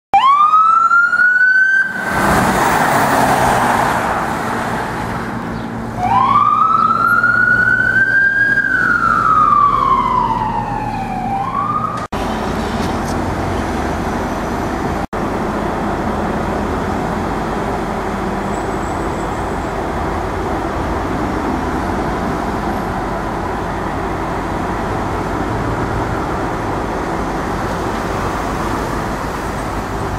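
An emergency-vehicle siren wailing, rising and falling twice, with a loud rushing noise between the two wails and a short yelp as the second one ends. Then a steady hum of idling engines and street traffic for the rest of the time.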